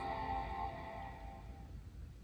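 MacBook Air startup chime, a single sustained chord from the laptop's speaker, fading away over about two seconds: the sign that the machine has powered on and begun to boot.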